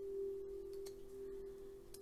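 A steady tone held at one pitch throughout, with a few faint light clicks over it.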